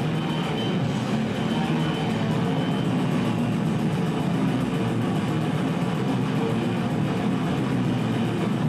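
Live rock band playing loudly and without a break, electric guitar to the fore with drums behind it.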